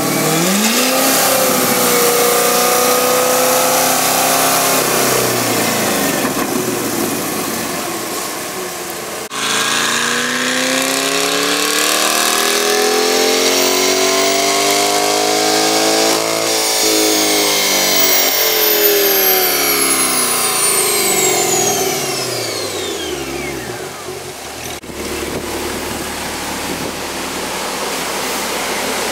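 C8 Corvette's 6.2-litre V8 making full-throttle pulls on a chassis dyno, with aftermarket sport catalytic converters on the stock exhaust. The engine note climbs steadily and then winds down, twice, the second run longer, with a high whine falling away as it slows, and a low steady running sound near the end.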